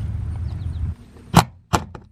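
A low rumble for about the first second, then two sharp knocks on the barn's wooden wall boards, about a third of a second apart.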